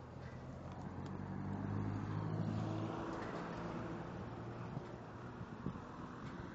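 A motor vehicle's engine passing close by, a steady low hum that swells to its loudest about two seconds in and then fades, over general street noise.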